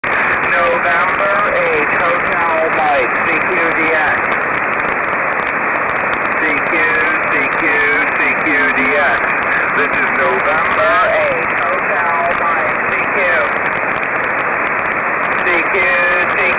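Single-sideband voice signals coming down from the FO-29 satellite's linear transponder, heard through a Yaesu FT-817 receiver in steady hiss. The voices are garbled and unintelligible, with a thin, narrow sound cut off above the highs.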